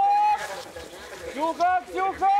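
Spectators shouting high-pitched calls of encouragement to passing cross-country skiers: a held shout at the start and two short ones about one and a half seconds in.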